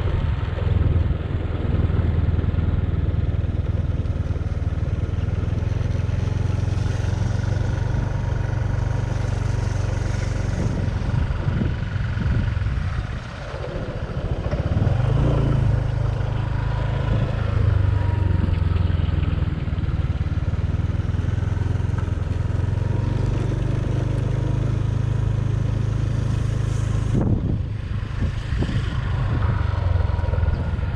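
Small motorbike engine running under way, with wind rumbling on the microphone. The engine note shifts in steps, easing off briefly about 13 seconds in and picking up again.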